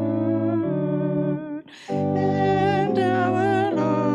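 A hymn sung by a woman with vibrato over held organ chords that change step by step. About a second and a half in, the music breaks off briefly for a breath between phrases, then goes on.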